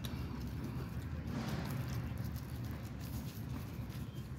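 Rustling and crinkling of a burrito's wrapper as it is unwrapped by hand, over a steady low rumble.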